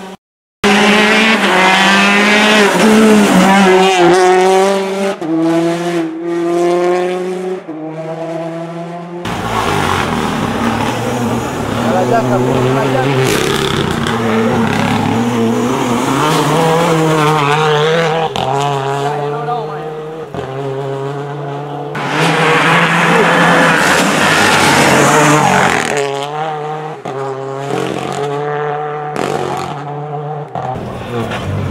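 Rally car engines revving hard through the bends, the pitch holding and then jumping in steps as gears change. The sound cuts out briefly about half a second in, and the engine note changes around nine seconds in as another car comes through.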